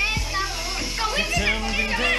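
A group of children shouting and cheering excitedly, with music playing underneath.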